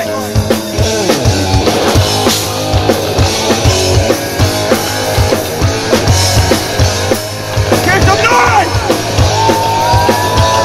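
Live punk rock band playing an instrumental passage: drum kit keeping a steady beat under bass and electric guitars. About eight seconds in a voice comes in briefly, and a single guitar note is held through the last second.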